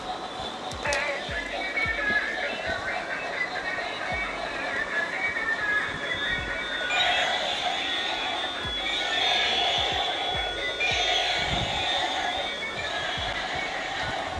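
Battery-operated light-up toy train playing a tinny electronic tune. From about halfway through, the tune falls into short phrases of about a second each that repeat.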